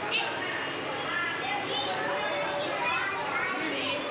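A group of young children chattering and calling out at play, many high voices overlapping without a pause.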